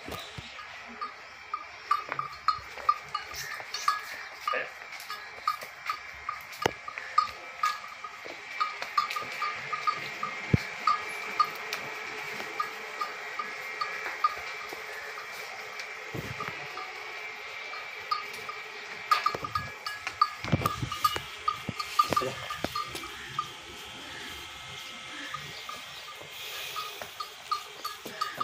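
A small metal bell on livestock jingling in quick, irregular clinks as the animals move about, with a few scattered knocks among them.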